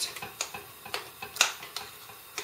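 A utensil stirring batter in a ceramic bowl, clicking against the bowl's side in irregular taps. Two louder knocks come about half a second and a second and a half in.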